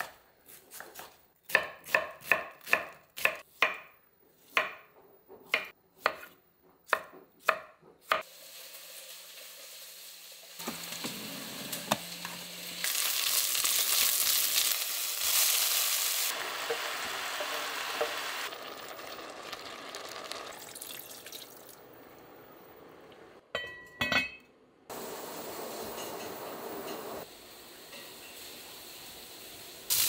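A knife chopping on a wooden cutting board, a dozen or so sharp chops over the first eight seconds. Then diced onion and carrot sizzling in a cast-iron pot, loudest for a few seconds in the middle, with a brief clatter of utensils near the end.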